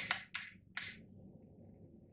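Grind-setting dial of a De'Longhi KG79 burr grinder being turned towards fine: three short scraping clicks in the first second.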